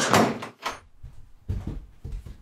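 An interior door moving: a short rush of noise, then a knock about half a second in, followed by a few soft low thuds.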